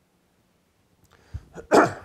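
A man clears his throat once, sharply, about one and a half seconds in, after a moment of near quiet.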